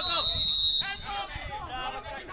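Referee's whistle blown once, a single loud, steady high blast of under a second that stops play, followed by players' and spectators' voices.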